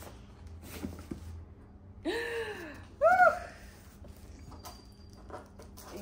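A woman says "yeah" about two seconds in and, a second later, gives a short rising-and-falling exclamation, the loudest sound here. Between them come faint taps and rustles of a taped cardboard box being handled.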